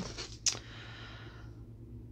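A tarot card handled once: one sharp snap about half a second in, then a short papery rustle that fades, as the card comes free of the deck. A low steady hum sits underneath.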